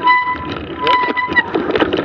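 Mountain bike brake squealing in a steady high tone for about a second and a half, over the rattle and clicks of the bike rolling along a snowy trail.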